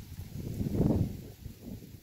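Wind buffeting the microphone: a low, noisy rumble that swells to its loudest about a second in and then falls away.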